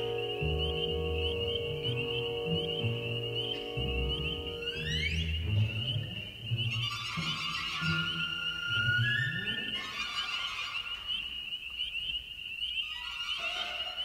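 Contemporary orchestral music blended with synthesizer sounds: a steady high trill runs throughout, over low repeated pulses, with rising whistle-like glides near the start and about five seconds in. A sustained chord breaks off about five seconds in, and thinner, higher held tones follow.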